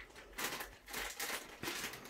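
Plastic Takis crisp bag crinkling and rustling in the hands as it is handled, in a run of irregular crackles starting about half a second in.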